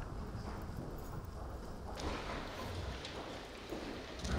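Irregular clicking and footsteps over courtroom room noise, a dense patter of small knocks as people move about.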